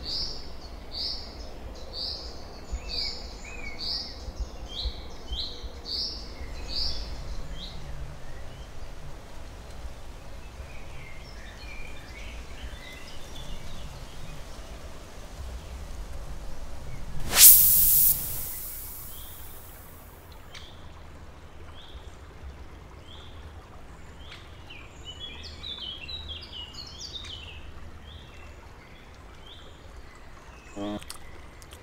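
Wild birds calling outdoors: a run of evenly repeated high notes, about two a second, in the first seven seconds, then scattered chirps and twitters. About seventeen seconds in, a brief loud burst of noise stands out above them.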